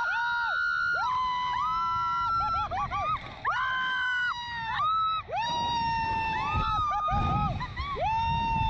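A woman and a man screaming on a slingshot reverse-bungee ride, a string of long held screams of about a second each, often both voices at once, broken by a few short yelps, over a low rumble.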